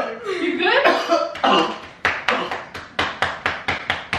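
A man in a coughing fit after inhaling smoke. A drawn-out strained voice sound comes first, then from about halfway through a run of sharp, rapid coughs, about three a second.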